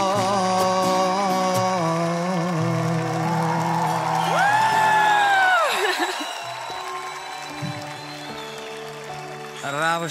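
A man singing with acoustic guitar and sustained chordal accompaniment, ending on one long held note that rises about four seconds in and falls away near six seconds. After that the music carries on more quietly with a few sparse held notes.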